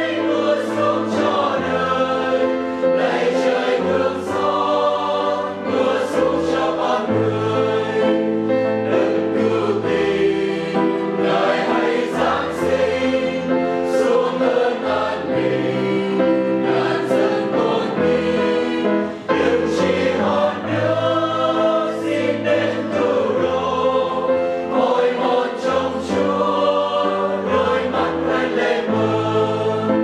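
Mixed choir of men and women singing a Vietnamese hymn in harmony, with long held notes.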